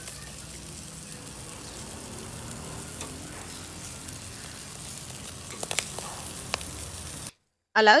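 Skewered pork sausages sizzling on a grill over charcoal, a steady hiss with a few sharp crackles and pops near the end, before the sound cuts off suddenly.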